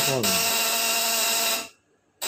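Vibrating platinum contact breaker of a 36-volt high-voltage fish-stunning unit buzzing steadily under a lamp load, arcing at the points, then cutting out abruptly near the end. It is the kind of stutter the owner puts down to small burnt grit on the points, which need smoothing with a file.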